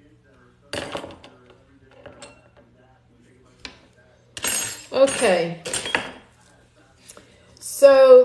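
Light clinks and clatter of small metal utensils handled on a wooden tray, with a short noisy rustle about a second in. A brief wordless voice sound about halfway through, and speech starting near the end.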